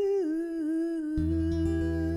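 A woman singing one long held note with vibrato, sliding down and then settling, while an acoustic guitar chord comes in about a second in.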